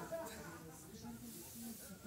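Quiet whispering and low, murmured speech, with breathy hiss.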